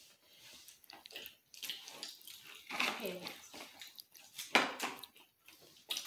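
Pringles potato crisps crunching as they are bitten and chewed: a few short, crackly crunches, the loudest about four and a half seconds in. A brief murmur of a voice comes about three seconds in.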